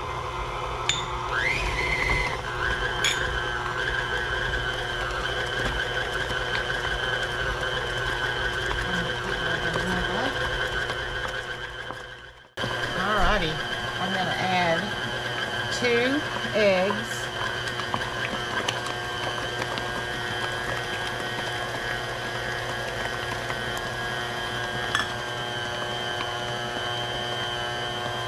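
KitchenAid Classic tilt-head stand mixer running steadily, its electric motor giving a constant hum with a high whine as the beater works thick cream cheese cheesecake batter. The sound drops out for a moment about twelve seconds in, then carries on unchanged.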